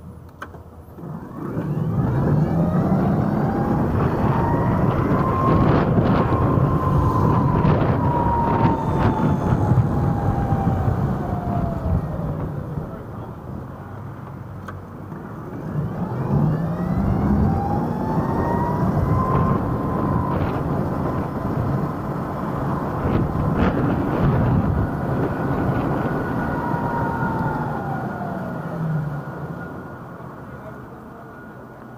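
TIER e-scooter's electric motor whining, rising in pitch as it pulls away and falling again as it slows, twice. Steady wind and tyre noise underneath, with a few sharp knocks.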